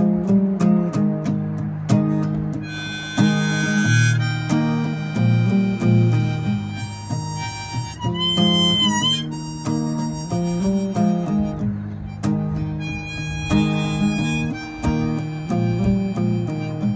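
Harmonica solo over strummed acoustic guitar. The harmonica comes in about three seconds in with long held notes, and bends one note with a wavering pitch about halfway through.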